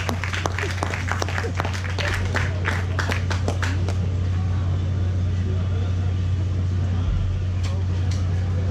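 Scattered clapping from the audience that thins out over the first few seconds, over a steady low electrical hum from the stage amplifiers and PA left on between songs.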